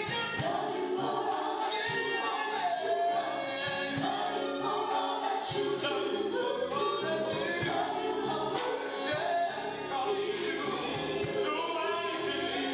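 Gospel choir singing together with live band accompaniment, many voices in harmony.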